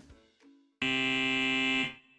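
Game-show buzzer sound effect: one steady, harsh tone about a second long, starting about a second in and cutting off sharply, marking a wrong answer.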